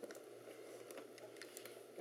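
Faint handling sounds: a few light clicks and rubs of plastic as the lid of an Apple iBook G3 clamshell laptop is lifted open.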